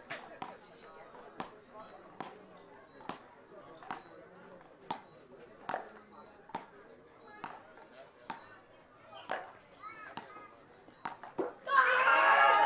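Road tennis rally: wooden paddles striking a skinned tennis ball and the ball bouncing on the court, a sharp knock a little more than once a second, over faint crowd voices. The knocks stop near the end as the rally ends and commentary resumes.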